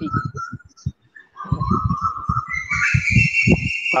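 A high whistling tone, held steady and then stepping up in pitch about a second in, with soft irregular low thumps beneath it.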